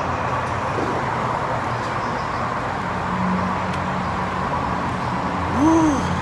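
Steady traffic noise in a covered parking garage: an even hiss with a low, level engine hum, as of vehicles running nearby.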